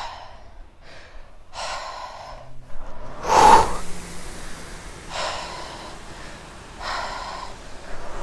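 A rower's heavy breathing during slow strokes on an indoor rowing machine. About three seconds in comes one loud, forceful breath out on the drive. Later, two shorter breaths in follow on the recovery, and there is another softer breath about two seconds in.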